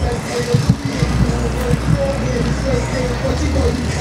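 A loud low rumble, heavier from about a second in, with faint distant voices and music behind it.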